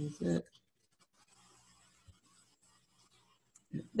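Brief voice sounds at the start, then near silence over the video call with faint scattered clicks, and speech resuming just at the end.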